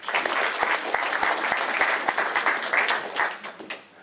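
Audience applauding: a dense run of many hands clapping that thins out near the end.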